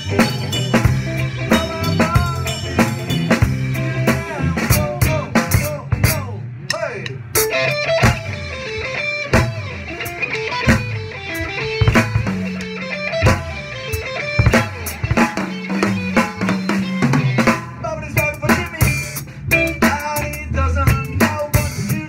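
Drum kit played live with a band, heard from the drummer's seat so the drums are loudest: snare, bass drum and cymbals keep a steady beat over guitar and other band instruments.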